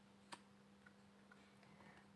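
Near silence with a few faint clicks of tarot cards being handled on a wooden table, one sharper click about a third of a second in, over a faint steady hum.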